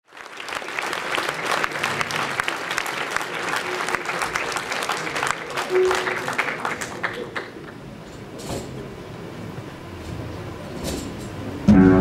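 Audience applauding, dying away after about seven seconds, then a few soft clicks of stage noise. Just before the end, guitars start playing loudly.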